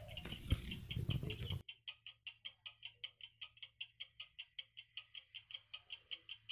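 A steady, rapid high-pitched chirping, about four to five chirps a second. The outdoor background noise cuts off abruptly about one and a half seconds in, while the chirping carries on evenly.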